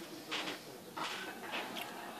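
Handling noise from a small plastic quadcopter being turned over in the hands as its propellers are worked on: a few brief plastic rustles and scrapes, about a third of a second, one second and nearly two seconds in.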